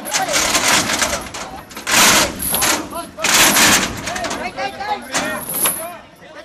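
Men's voices calling out, broken by two loud, harsh bursts of noise, about two seconds in and again about three and a half seconds in.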